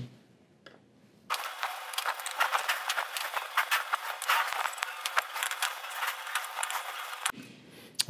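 Small screws being backed out of a sheet-metal plate with a No. 1 Phillips hand screwdriver: a rapid, irregular run of light metallic clicks and scrapes. It starts about a second in and stops shortly before the end.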